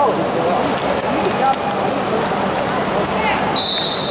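Youth basketball game in a gym: a ball bouncing on the court, with short high shoe squeaks about a second in and again near the end, over steady background chatter from players and spectators.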